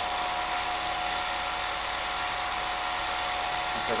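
Home movie projector running with a steady mechanical whir and a constant tone through it. It is running with its film loop lost, which the operator fears could make the film break.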